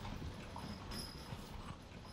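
Faint low room noise with a few light, scattered taps and knocks, like hands moving over equipment.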